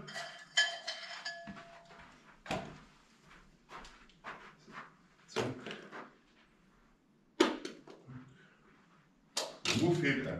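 Scattered knocks and clicks of training gear being handled and set down: a plastic storage box, plastic marker cones and pens. A short ringing clack comes about half a second in, and a sharper knock about seven and a half seconds in.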